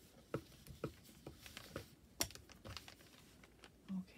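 Irregular light taps and clicks of paper being folded and pressed down on a craft table, with a plastic bone folder handled and set down; the sharpest tap comes a little over two seconds in.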